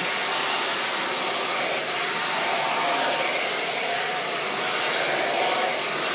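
Handheld blow dryer running steadily, an even whoosh of air, as a section of curly natural hair is blown out straight.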